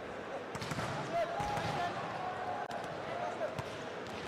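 Several sharp thuds of a volleyball being hit and bouncing on the court, under a steady background of crowd voices, one voice drawn out through the middle.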